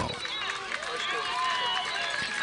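Steady murmur of a stadium crowd with scattered distant voices.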